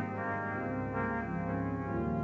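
Pipe organ playing sustained chords over a deep pedal note that enters about half a second in and stops just before the chords move on.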